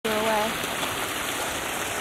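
Shallow water from a geyser-basin runoff channel flowing over rock, a steady rushing.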